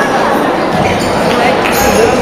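Table tennis rally: the ball clicking sharply off the bats and the table several times at irregular intervals, over the steady chatter of a busy sports hall.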